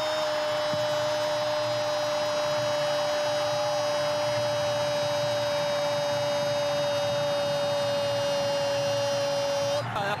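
A sports commentator's long held "gol" cry for a goal, kept on one pitch in a single breath for about ten seconds and sinking slightly before it breaks off near the end, over crowd noise.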